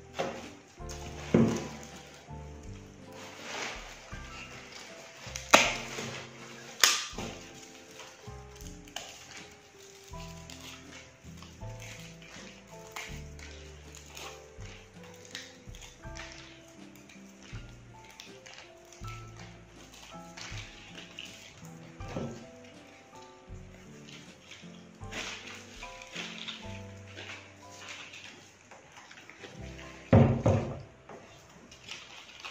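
Soft background music with slow, held notes, over the rustle and knocks of fir branches being handled and pushed into a pot, with the sharpest knocks about a second and a half, five and a half, seven and twenty-two seconds in.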